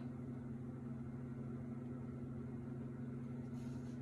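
A steady low hum with a couple of fixed pitches and no other clear sound, with a faint brief hiss near the end.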